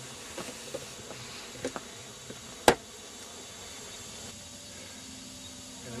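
Steady faint outdoor hiss, with a few small clicks and one single sharp click about two and a half seconds in.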